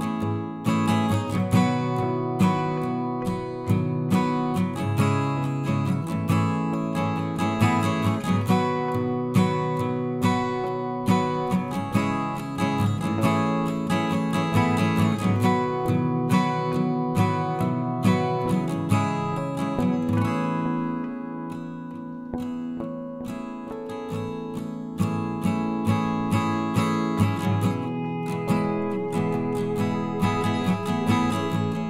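Background music led by a strummed acoustic guitar, with steady regular strokes; it turns softer for a few seconds a little past the middle, then picks up again.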